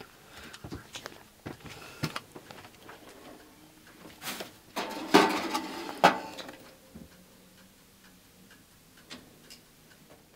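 Handling knocks and clicks, then a baking dish slid into a small countertop oven with a scraping, rattling stretch from about four to six seconds in, ending in a sharp clunk as it settles or the oven door shuts.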